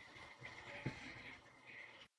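Very faint room noise with one short, soft click a little under a second in.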